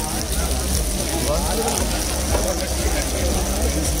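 Voices talking over a steady low hum; the hum drops away near the end.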